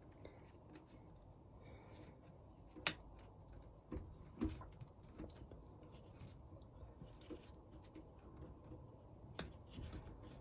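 Faint handling noise as a clear plastic bumper strip is worked against a squash racket frame: a few light clicks and taps, the sharpest about three seconds in.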